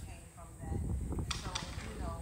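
A man's voice talking, over a steady low rumble.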